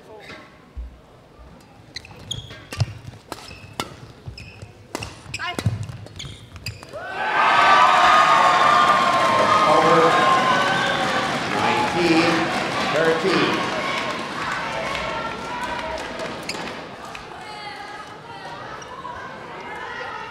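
A badminton rally: a quick, irregular series of sharp racket strikes on the shuttlecock for about seven seconds. The point then ends and spectators burst into loud cheering, shouting and clapping, which fades over the following seconds.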